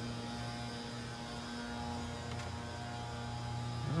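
A steady low hum with several evenly spaced overtones, unchanging throughout.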